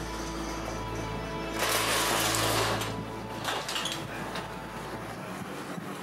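Music with a steady low hum under it, and a brief rush of noise about two seconds in.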